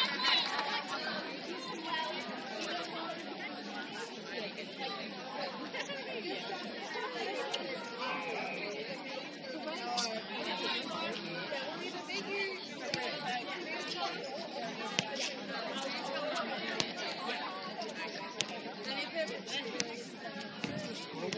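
Many people chattering at once, with no single voice standing out, and a few sharp knocks among the talk.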